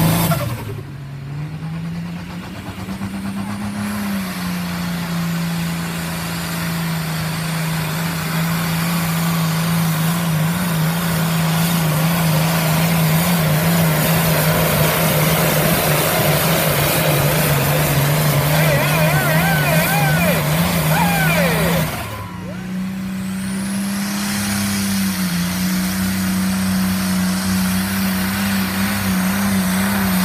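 Pulling tractors' engines running hard under full load as they drag the weight sled down the track, heard as a series of clips. The engine note holds steady within each clip and sits a little higher after the cuts. Shouts from the crowd come in over the engine shortly before the second cut.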